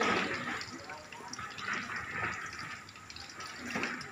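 Stuffed bitter gourd slices sizzling as they deep-fry in hot oil in a wok, with small crackles as tongs turn and lift them.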